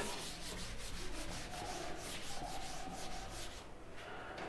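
A sponge duster wiped back and forth across a chalkboard, erasing chalk in quick repeated strokes that trail off shortly before the end.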